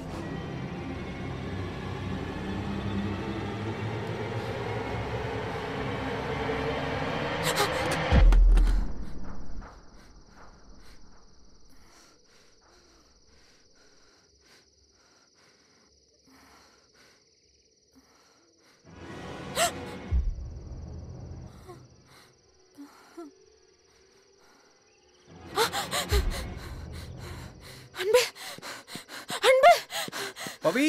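Horror film soundtrack: a swelling drone of rising tones builds for about eight seconds and ends in a deep boom, followed by near quiet. A second sharp stinger hits about twenty seconds in, and near the end a woman gasps and breathes in fright over the score.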